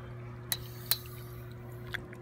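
Shallow river water lapping and sloshing around hands and a sturgeon held at the surface, with three sharp little splashes or clicks: about half a second in, about a second in, and near the end.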